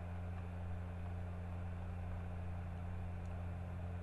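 Steady low hum with a faint hiss under it, the background noise floor of the recording.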